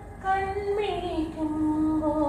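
A woman singing a Malayalam light-music melody solo: after a brief breath a note is held, then slides down about a second in and settles on a lower, sustained note.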